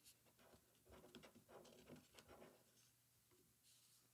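Near silence: room tone with faint rustling and a few light ticks of paper being handled at a desk.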